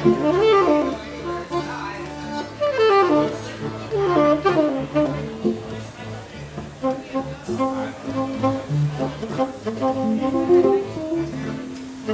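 Free-improvised jazz from tenor saxophone, accordion and electric guitar: the saxophone plays quick runs that slide up and down in pitch over long held accordion notes.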